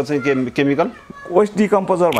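A man talking in Nepali, his voice rising and falling in drawn-out syllables, with a brief pause about halfway through.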